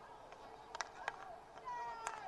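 Two sharp clacks of hockey sticks hitting the ball about a second in. Near the end comes a high, drawn-out call from a player's voice across the pitch.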